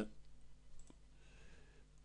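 Faint clicks of computer keyboard keys being pressed over quiet room tone, with one clearer click about a second in.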